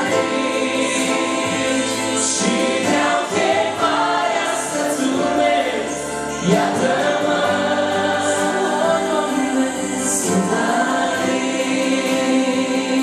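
Romanian Christian worship song sung as a male-female duet into microphones over electronic keyboard chords, with many voices singing along in a choir-like sound. The singing runs on without a break.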